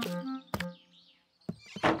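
Cartoon sound effect of boots being kicked off: a short run of musical notes stepping down in pitch, then a single thunk about half a second in as a boot lands, and a brief noisy scuffle near the end.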